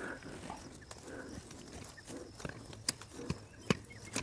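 Bark being stripped by hand from a lemon branch to make an air layer: small snaps, clicks and leaf rustle, with three sharper clicks in the last second and a half.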